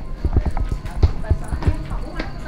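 Footsteps on a hard floor, quick and uneven, several steps a second.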